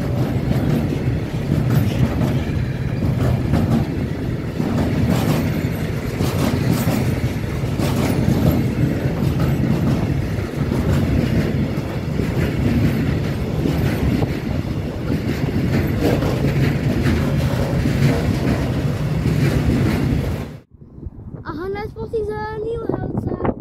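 A long freight train of tank wagons passing close by, its wheels rumbling and clattering steadily on the rails with many sharp clicks. The sound cuts off abruptly near the end, and a voice follows.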